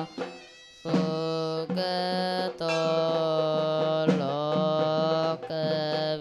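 Background music with long, held melodic notes that change pitch every second or so. It drops out briefly just under a second in.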